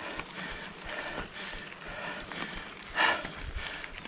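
Mountain bike riding noise picked up on a handlebar-mounted camera: tyres rolling over paving stones with the bike rattling and knocking over the bumps, and a brief louder sound about three seconds in.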